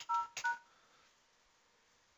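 Touch-tone (DTMF) keypad beeps from a ShoreTel Communicator softphone as conference ID 1000 is keyed in to the video bridge's virtual operator. Two short two-tone beeps come in the first half second, then nothing.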